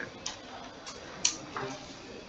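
A few short, sharp clicks or ticks over low room noise, the loudest just past halfway.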